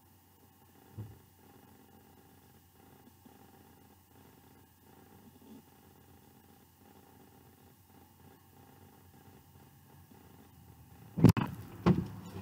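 Car door being opened: a sharp, loud latch clack near the end, followed by a second click, breaking a quiet cabin with only a faint low rumble.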